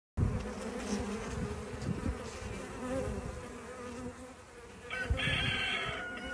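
Many bees buzzing together in a dense, steady hum; a higher, brighter buzz joins about five seconds in.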